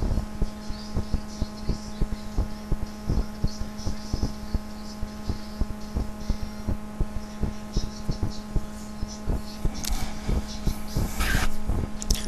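A steady low hum with many short, irregular clicks and thumps over it, several a second.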